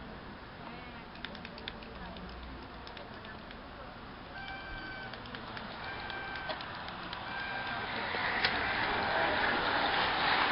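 A bunch of racing bicycles approaching and passing, a rushing noise of tyres and wind that grows louder over the last couple of seconds. Three short beeping tones of one steady pitch sound in the middle, before the bunch arrives.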